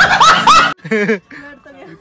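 A man laughing hard in a short edited-in meme clip, loud and cutting off abruptly under a second in, followed by quieter voices.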